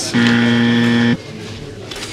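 Game-show style buzzer sound effect marking a 'pass': one flat, unchanging buzz about a second long that starts and stops abruptly.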